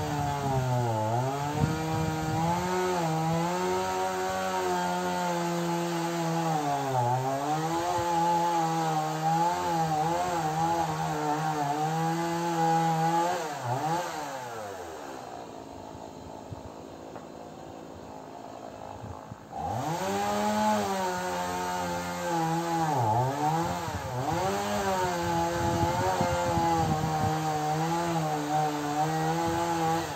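Two-stroke chainsaw running at high revs, its pitch dipping again and again as it bogs down in the birch wood. About halfway through it drops back to a lower idle for a few seconds, then revs up again and carries on cutting.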